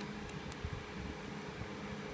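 Steady whirring of room fans, with a few faint plastic clicks about half a second in as a Rubik's cube layer is turned.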